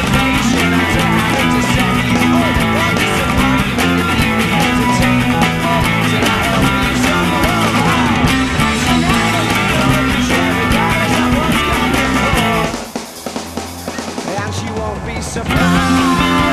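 Fast rock song: an electric guitar, a Fender Road Worn 50's Stratocaster, strummed rapidly over drums and bass. Near the end the band thins to a quieter break for a couple of seconds, then comes back in at full volume.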